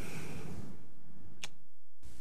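Steady low hum of room tone after speech stops, with a single sharp click about one and a half seconds in.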